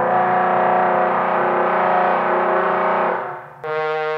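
Hand-blown, lamp-worked glass trombone played with a rough, buzzing tone in which several pitches clash at once, fading out about three seconds in. A clean, steady note starts just before the end.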